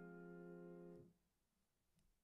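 Faint, fading tail of one held piano note, the F that resolves a suspension, cut off about a second in and followed by near silence.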